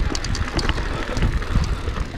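Mountain bike rolling over a dry dirt trail: a rough low rumble of tyres and wind on the microphone, with scattered clicks and rattles from the bike over the bumps.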